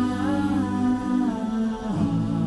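Wordless vocal music: voices humming long held notes, the pitch rising and falling slowly in the middle, then shifting to a new note near the end, with no beat.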